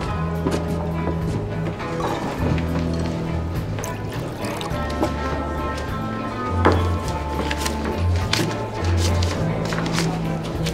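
Guitar-based instrumental film score with a low bass line moving in held notes, over bar ambience; a glass is set down on the wooden bar counter with a sharp knock about six and a half seconds in.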